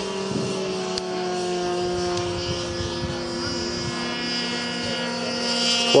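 A 70mm ten-blade electric ducted fan on an RC delta wing, whining steadily in flight with several tones at once, its pitch easing slightly lower.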